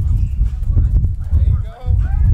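Wind buffeting the microphone in uneven low gusts. Brief shouted voices come in near the end.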